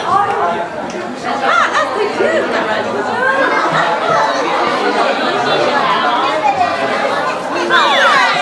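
Overlapping chatter of many people talking at once in a large indoor room.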